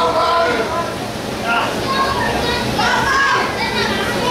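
Spectators shouting and calling out at a wrestling match, several voices overlapping, some of them high-pitched.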